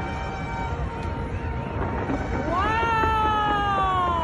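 A fireworks display with a dense, low rumbling crowd-and-fireworks din. Two and a half seconds in, a long high-pitched wailing cry rises quickly, then slides slowly down over about two seconds.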